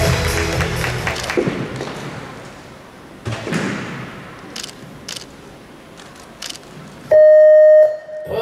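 Music fading out over the first couple of seconds, then quiet hall sound with a few scattered knocks. Near the end, one loud steady electronic beep lasting just under a second, the signal tone ahead of a rhythmic gymnastics routine's music.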